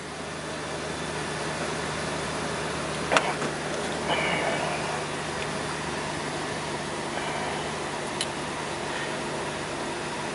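2003 Jeep TJ engine idling steadily, heard from inside the cabin as a low hum. A sharp click comes about three seconds in and a fainter one near eight seconds.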